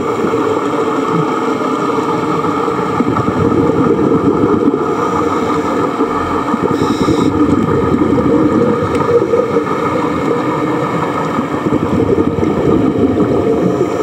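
Steady, loud rushing noise of open water recorded underwater by a camera in a waterproof housing during a scuba dive.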